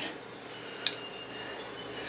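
One small sharp click from a mower carburetor's parts being handled, the float pin and plastic float being worked loose, over quiet room tone.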